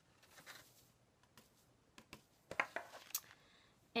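Faint handling sounds of cardstock being tilted and tapped over a paper coffee filter to shake off loose embossing powder, with soft rustles and a few small sharp clicks in the second half.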